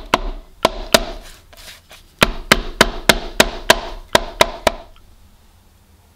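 A pestle pounding a lemongrass stalk to bruise it and release its oils: two separate strikes, then a run of about nine even strikes at roughly three a second, stopping about five seconds in.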